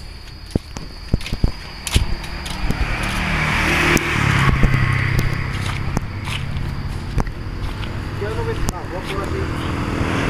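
Road traffic: a motor vehicle passing on the main road, its engine hum and tyre noise swelling from about three seconds in, after a few sharp ticks.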